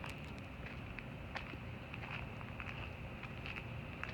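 Footsteps on a gravel lot: scattered light crunches over faint steady outdoor background noise with a thin, high-pitched hum.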